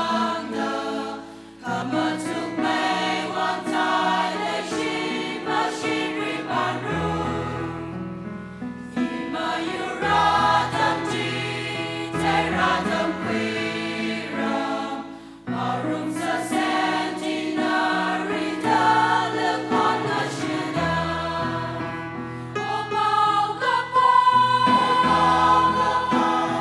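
Mixed church choir of women and men singing a hymn together, phrase after phrase. There are short breaks between phrases about two seconds and fifteen seconds in.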